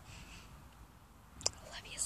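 A child whispering softly, with one sharp click about one and a half seconds in.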